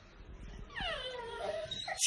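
Pit bull whining: a high whimper that slides down in pitch under a second in, followed by a shorter whine near the end.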